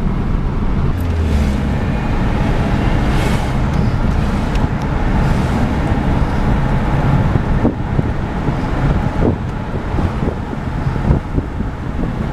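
Steady road noise of a moving car heard from inside the cabin: a low, even hum of tyres and engine, with a few light knocks in the second half.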